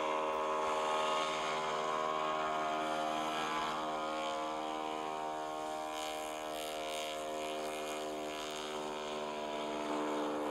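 A de Havilland DHC-2 Beaver floatplane's radial piston engine and propeller, a steady, even drone with a hiss over it.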